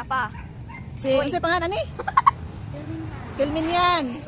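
Women's voices talking and calling out, ending in one long drawn-out vocal sound near the end, with a few short clicks in the middle.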